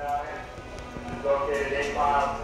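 Voices talking indistinctly, with a few sharp clicks or knocks among them.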